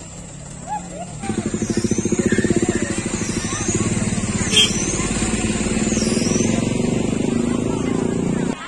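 A vehicle engine running close by, with a rapid even pulsing. It cuts in abruptly about a second in, with a single sharp click about halfway through.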